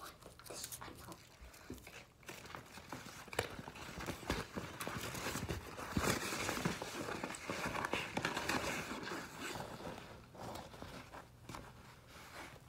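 Rustling of a non-woven fabric tote bag as it is handled and rummaged through, with scattered taps and knocks. It is busiest from about four to ten seconds in.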